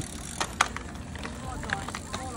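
Cyclocross bike being run past on grass, with two sharp clicks about half a second in over a steady outdoor background.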